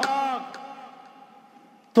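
A man's sermon voice trailing off at the end of a phrase. Its echo through the hall's loudspeaker system rings on as one faint held tone that dies away over about a second and a half before he speaks again.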